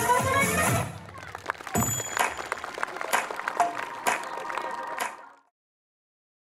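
Upbeat music stops about a second in, and an audience applauds with scattered claps for a few seconds before the sound fades out.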